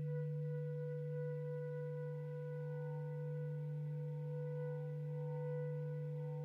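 Bass clarinet and flute each holding one long, steady note: a low bass clarinet tone, the loudest sound, with a quieter flute note sustained above it, both unbroken and swelling only slightly.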